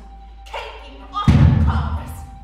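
A single deep, loud thump about a second in, struck on the ensemble's percussion, ringing on after the hit, with a performer's voice just before it.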